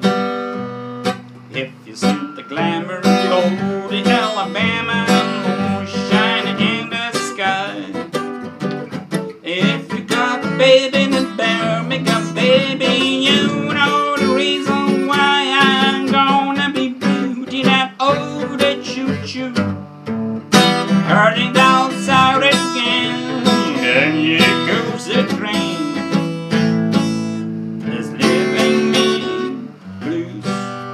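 Epiphone jumbo acoustic guitar strummed in a continuous run of chords with picked notes in between, a full, loud tone.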